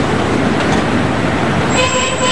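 Loud street traffic noise around a bus stand, with a vehicle horn sounding steadily near the end.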